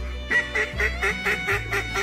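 A quick run of about seven squealing wood duck calls, four to five a second, over steady background music.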